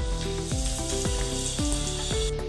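Hot oil sizzling as a breadcrumb-coated chicken bread patty is lowered in and starts to deep-fry. Background music with a steady beat plays over it.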